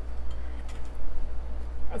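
A table knife spreading mashed avocado across crusty toasted bread, with faint scraping strokes over a steady low hum.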